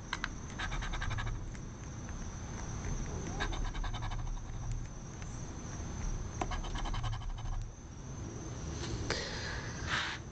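A metal coin scratching the latex coating off a scratch-off lottery ticket, in several bursts of quick rapid strokes with short pauses between.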